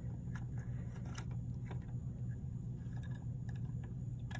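Faint plastic clicks and scrapes, five or so spread across the few seconds, as a replacement fill-valve cap (Fluidmaster 385) is pushed down and twisted onto a Fluidmaster 400 series toilet fill valve. A low steady hum runs underneath.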